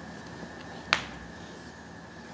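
A single sharp click about a second in, over a faint steady background hiss and hum.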